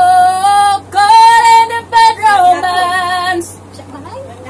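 A woman singing loudly, unaccompanied, in a high voice, holding long notes with two short breaks, and stopping about three and a half seconds in.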